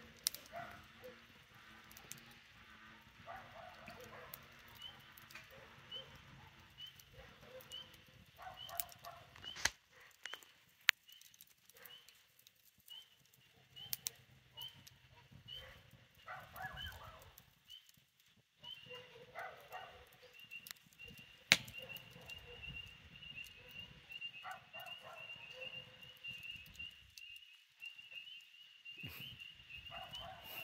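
A wood fire crackles faintly in a metal fire pit, with a few sharp pops. Under it runs a high, regular chirping that becomes continuous past the middle. Now and then a dog barks in the distance.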